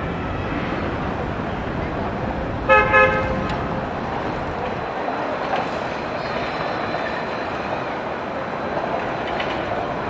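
A vehicle horn toots twice in quick succession, two short blasts a little under three seconds in, over steady background noise.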